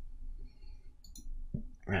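Computer mouse clicking, a couple of sharp clicks about a second in, over a low steady hum.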